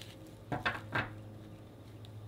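A deck of tarot cards shuffled by hand: a short flurry of card noise about half a second in, lasting about half a second, over a faint steady hum.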